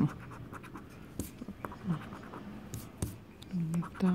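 A coin scratching the coating off a scratch-off lottery ticket in short, irregular strokes.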